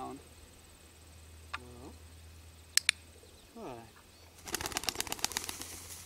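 Pigeon taking off, its wings flapping fast and loud from about four and a half seconds in. A little before it, a sharp double click of a dog-training clicker.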